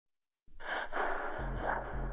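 Opening of a progressive psytrance track: after about half a second of silence, a sampled breathing, gasping sound comes in. A deep electronic bass note enters about a second and a half in.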